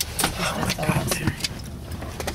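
Sandstorm wind buffeting a stopped vehicle, heard from inside the cabin as a steady low rumble, with a quick series of sharp knocks and clicks in the first second and a half.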